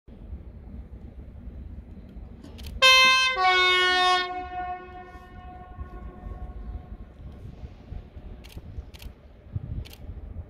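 Locomotive air horn on an arriving train: one short blast in two tones, a higher note followed by a lower one, about a second and a half in all, ringing on for a few seconds afterwards over the low rumble of the train rolling in. A few sharp clicks come near the end.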